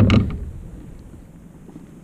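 Handling noise on a plastic kayak as a hooked bluegill is worked in a rubber landing net: one sharp knock with a short low thud at the start, then faint rustling that fades away.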